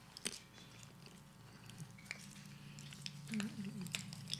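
Faint chewing of a communion wafer close to a microphone, with a sharp click about a quarter second in and small ticks over a steady low hum.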